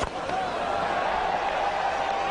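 A cricket bat striking the ball with one sharp crack right at the start, followed by the steady noise of a stadium crowd.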